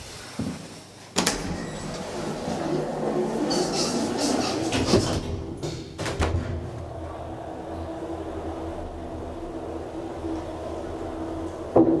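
DEVE hydraulic elevator: a sharp clack about a second in, then several seconds of rattling and clattering as the doors close. Another clack comes around six seconds, followed by a steady hum with a droning tone as the hydraulic unit runs and the car travels, and a knock near the end.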